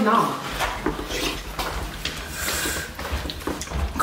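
Short, irregular knocks and scrapes of hands and food against ceramic plates as two eaters scoop starch and meat from them, with murmuring voices behind.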